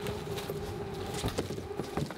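A steady hum with scattered knocks, clicks and rustles, as of gear and bags being handled.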